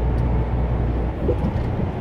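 Inside the cab of a MAN TGX semi-truck cruising at motorway speed: a steady low drone of its six-cylinder diesel engine mixed with tyre and road noise.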